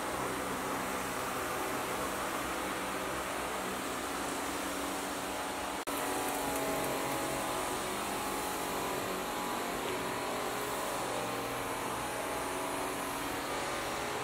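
Steady mechanical hum with a hiss running through, with a sudden break about six seconds in where the sound cuts and picks up again.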